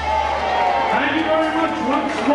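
A man's voice talking, amplified through the hall's sound system.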